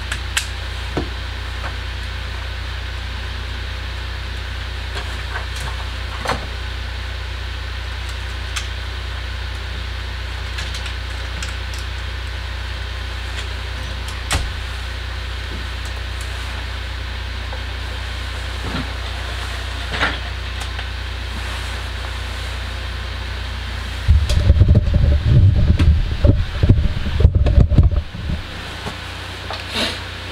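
Steady low hum under scattered sharp clicks and knocks of parts being handled at a repair bench. About 24 seconds in, a loud, rough rumbling sets in right at the microphone and runs on with uneven thumps.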